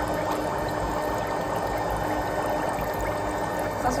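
Electric foot spa running: water bubbling and churning steadily in the basin, with a steady hum from the unit.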